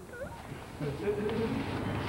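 A person's voice: a short squeaky glide near the start, then a held, hum-like note about a second in, over room noise.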